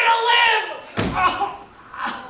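A single heavy thump about a second in, a body hitting the wooden stage floor as a performer drops to the ground, with a short echo in the hall after it. It follows a moment of singing voices.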